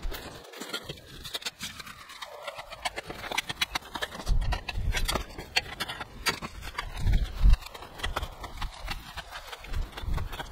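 Hand nibbler cutting along the edge of a metal wheel arch repair panel: a steady run of sharp metallic clicks, a few a second, as the tool chews through the sheet, with a few duller knocks.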